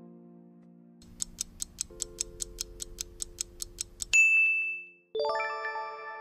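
Quiz countdown sound effects over soft background chords: a clock-like ticking, about five ticks a second, starts about a second in and ends about four seconds in with a single loud ding marking time up. After a brief gap a ringing chime of several notes sounds near the end as the answer is revealed.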